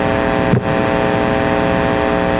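Steady electrical hum with hiss, made of several even, unchanging tones, with one brief click about half a second in.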